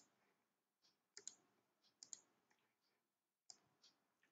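Faint computer mouse clicks: a quick double click about a second in, another about two seconds in, and a single click near the end, with near silence between.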